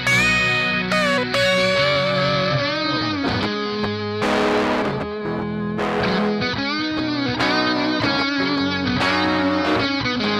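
Two electric guitars playing a rock song's instrumental intro through effects, with sustained notes and string bends. A louder, noisier burst comes about four seconds in.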